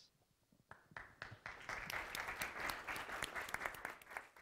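Audience applauding: a few scattered claps about a second in, quickly building to steady applause.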